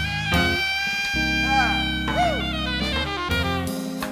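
Saxophone solo in a jazz band, over sustained keyboard chords and drums. The saxophone holds one long note for about two and a half seconds, then moves into shorter notes near the end.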